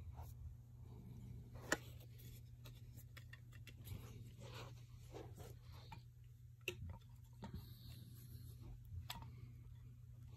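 Faint handling of a wooden folding A-frame guitar stand as its legs are picked up and spread open, with scattered light clicks and knocks. The sharpest click comes just under two seconds in, and others come near the end. A steady low hum runs underneath.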